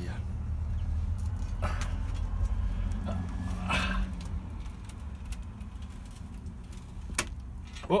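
Stone slab drain cover scraping and knocking a few times against its concrete frame as it is prised up by hand and lifted aside, over a steady low rumble.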